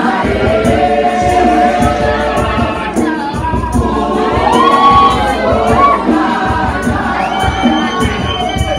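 Youth choir singing together, with the audience cheering and high gliding calls rising and falling over the voices midway.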